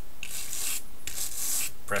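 Brass bristle brush dragged firmly in one direction across wooden duckboard strips, scraping texture into the wood grain. There are two strokes of under a second each, with a short break between them.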